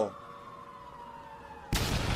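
A faint whistle falling slowly in pitch, then a sudden loud explosion about one and a half seconds in, which rumbles on.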